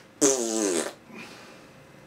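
A man blowing a raspberry, one buzzing blow through the lips lasting a bit under a second, its pitch falling slightly. It stands in for a rude word to finish his remark that the weather went bad.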